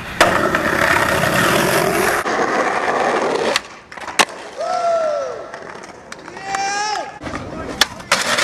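Skateboard wheels rolling loudly on concrete, with sharp clacks of the board popping and landing at the start, about four seconds in and near the end. From about four and a half seconds a person shouts out with a call that rises and falls, followed by further shouts.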